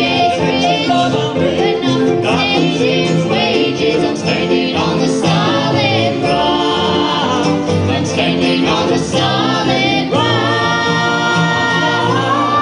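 Bluegrass band playing live on banjo, fiddle, acoustic guitar and upright bass with keyboard, a wavering melody line on top and a held chord near the end.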